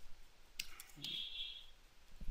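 A few quick, light clicks of keys being pressed on a computer, about half a second in, followed by a faint short sound about a second in.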